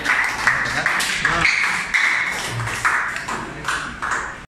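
A small group applauding, individual hand claps heard separately and unevenly, with a few voices under them.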